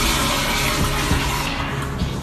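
Toilet flushing in a tiled public restroom: a loud rush of water that thins out near the end, over background music with a low beat.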